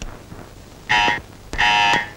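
Electric doorbell buzzing twice: a short ring, then a slightly longer one, each a steady buzz that stops abruptly.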